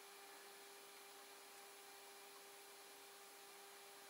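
Near silence: faint steady hiss with a faint steady hum tone.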